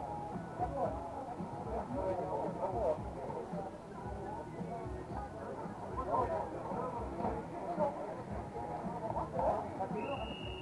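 Several people talking at once, indistinct overlapping chatter at a fairly even level.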